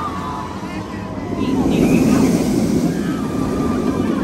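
Steel roller coaster train rushing past on its track, a rumbling roar that swells to a peak about two seconds in and then eases, with faint voices of people nearby.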